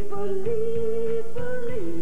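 Live band music: a singer holds long, drawn-out notes that step up and down in pitch over keyboard and a steady drum beat.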